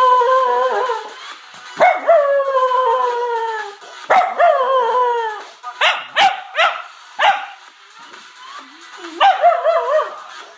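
A dog howling: three long howls in a row, each sliding slowly down in pitch. About six seconds in come four short, sharp yelps, and a wavering howl starts near the end.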